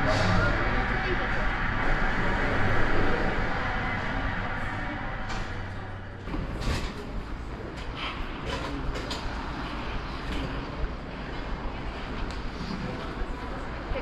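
A television replay of the 1980 hockey game, heard through the TV's speaker: a crowd cheering with an announcer talking over it. About six seconds in this gives way to the quieter, echoing hall of an ice rink, with scattered scrapes and clicks of skate blades on the ice.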